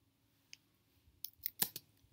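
Computer keyboard keystrokes: a single key click about half a second in, then a quick run of several clicks in the second half as a command is typed.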